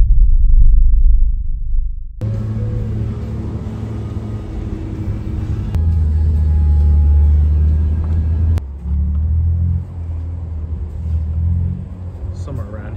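A car's engine running steadily, heard from inside the cabin as it drives slowly, with a few abrupt cuts in the sound. It opens with a loud, deep rumble lasting about two seconds.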